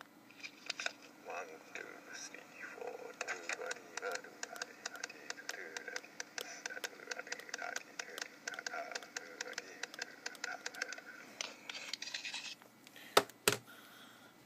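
Playback of a recorded tapped rhythm: a quick, even run of sharp taps, several a second, with a voice sounding under it, played as an example of a slight bounce of about fourteen percent, almost one eighth. Two loud sharp knocks come near the end.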